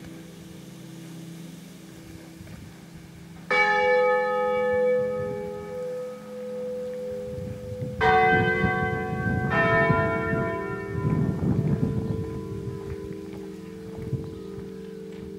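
Church bells in a tower ringing out sparsely: a lingering hum, then three separate strikes about 3.5, 8 and 9.5 seconds in, each left ringing, with a low rumble underneath in the second half. The long, uneven gaps between strikes suggest the full peal is winding down as the bells swing to rest.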